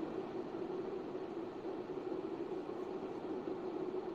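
Steady low background noise with a faint continuous hum.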